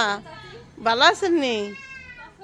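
A high-pitched, drawn-out call about a second long that rises and then falls in pitch, just after a high voice breaks off at the start.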